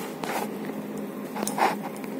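Handling noise from a hand rubbing and gripping the phone that is recording: two short scrapes, the louder one about one and a half seconds in, over a faint steady low hum.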